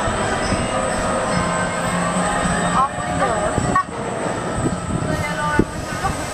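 Roller coaster station noise: people's voices over the rumble and rattle of the flying coaster's train and machinery, with a low hum about a second in and a few sharp clicks.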